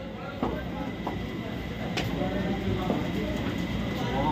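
Outdoor background noise around a crowd: a steady low rumble with faint voices and a few short knocks, one shortly after the start and one about two seconds in.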